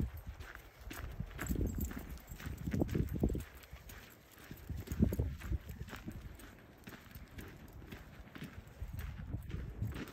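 Footsteps of a person walking on a dirt trail, an uneven series of low thuds and small crunches, heaviest in the first half.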